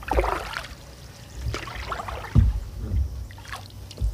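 Hand-carved wooden canoe paddle stroking through the water: a splash and trickle of water off the blade at each stroke, several strokes about a second apart, with low wind rumble on the microphone.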